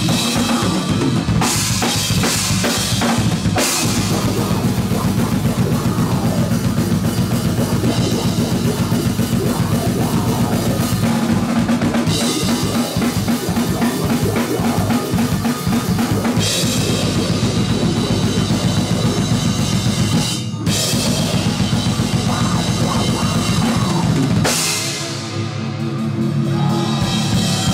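Death metal band playing live and loud: heavy distorted guitars and bass over a drum kit with rapid bass drum and cymbals, breaking off for a brief stop about twenty seconds in before coming back in.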